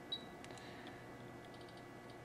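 Faint ticks and clicks from a bench function generator's controls as its output frequency is stepped up, with one sharper, slightly ringing tick near the start. A faint steady electronic whine runs underneath.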